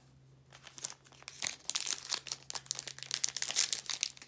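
Foil trading-card pack wrapper being torn open and crinkled by hand: a dense run of crackling that starts about a second in and grows loudest near the end.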